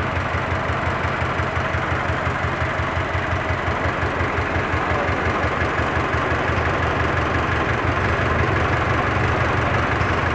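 The 1924 Kissel truck's four-cylinder Durant engine idling steadily just after a cold start on the choke, with an even low beat.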